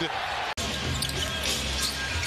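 Basketball broadcast audio: a basketball dribbling on a hardwood court over arena crowd noise. It comes in after an abrupt edit cut about half a second in.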